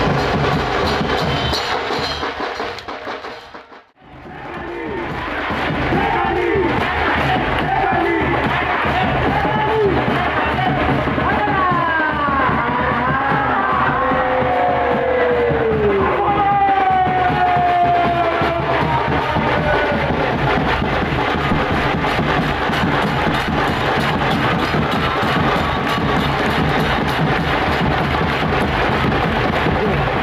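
Loud music mixed with the noise of a large cheering crowd. The sound fades out about four seconds in, then swells back up and runs on steadily, with rising and falling voice-like glides in the middle.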